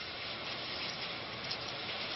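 Steady hiss of background room noise, even and unchanging, with no distinct events.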